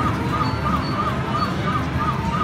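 Slot machine bonus wheel spin sound effect: a short electronic chirp repeating about three times a second as the wheel turns and slows, over casino background din.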